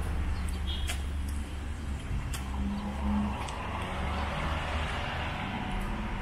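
Cars running slowly at close range on a wet street: a steady low engine rumble, with tyre hiss on the wet asphalt swelling through the middle as a car moves past.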